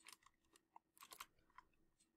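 Near silence with a few faint, scattered computer mouse clicks.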